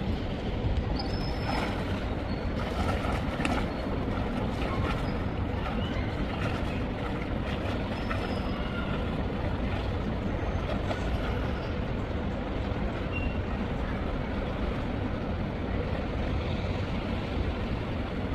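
Steady rushing water noise of a swimming pool as a swimmer sets off doing breaststroke, with a few faint splashes or knocks in the first few seconds.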